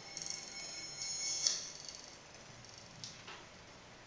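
A quiet stretch of live improvised electroacoustic music: faint high, glassy textures and scattered light clicks and clinks, with a brighter hit about one and a half seconds in and a couple more near the end.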